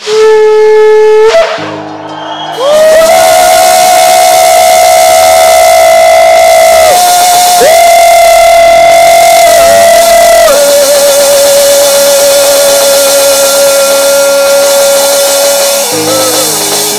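Shofar (ram's horn) blown into a microphone, very loud: a short blast, then two long blasts of several seconds each with a brief break between them. Sustained background music chords run underneath.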